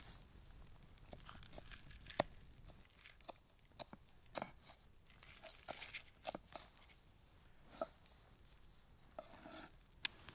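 A knife cutting through a crispy, cast-iron-baked pizza crust on a wooden board: faint, scattered crunches and small clicks.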